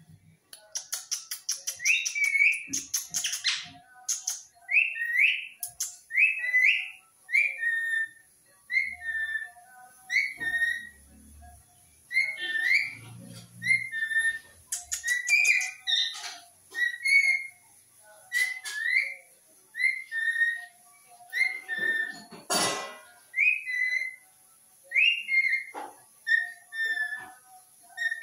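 Rose-ringed (Indian ringneck) parakeet giving short rising whistled chirps, repeated about once a second, with scratchy chattering bursts among them. About three-quarters of the way through there is one louder, harsh burst.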